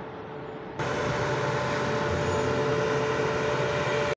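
Quiet background, then a little under a second in a loud, steady, vehicle-like drone with a constant hum cuts in abruptly and holds level.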